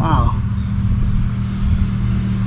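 A motor runs steadily throughout, a low hum of a few held tones over a rumble. A man's short 'wow' comes right at the start.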